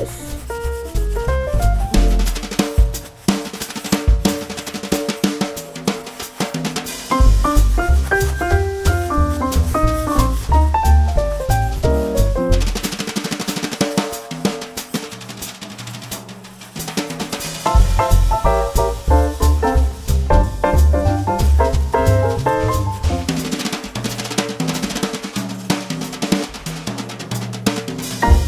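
Instrumental background music with a busy drum kit, a bass line and a melody. The bass and drums drop out for a few seconds midway, then come back in.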